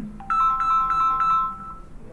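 A phone ringtone going off: a short electronic melody of quick, evenly spaced notes, starting just after the start and cutting off near the end.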